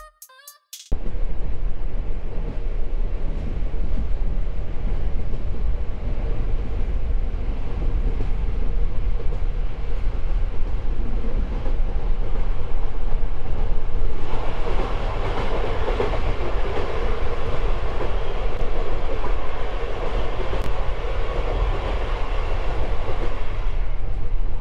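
Moving PKP Intercity passenger train heard from inside the carriage: a steady rumble of wheels on rails, growing louder about halfway through.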